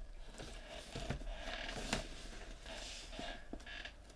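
Cardboard mystery-box packaging being handled and opened by hand: rustling and scraping with a few light knocks, one sharper about two seconds in.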